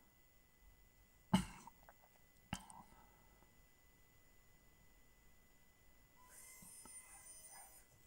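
Near quiet, with a short cough-like burst a little over a second in and a single sharp click about a second later. A faint high whine follows near the end.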